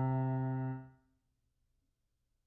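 Piano notes played back from notation software: the final two-note chord of the exercise rings on, fading, and cuts off abruptly just under a second in.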